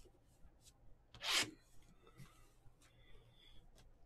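A cardboard trading-card box handled and slid on a mat: one brief rubbing scrape about a second in, with a few faint light clicks.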